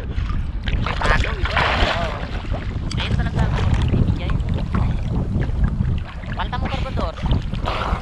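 Sea water splashing and sloshing against a camera held at the surface while a person wades chest-deep, with many small splashes and a steady rumble of wind on the microphone.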